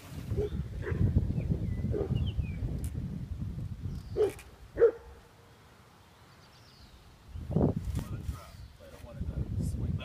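A dog barking twice, about half a second apart, a few seconds in, over a low rumbling noise.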